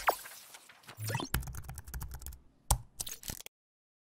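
Sound effects of an animated TV-channel logo ident: a quick downward zip, then a run of rapid clicks and swishes with one sharp hit near three seconds in, cutting off abruptly to silence.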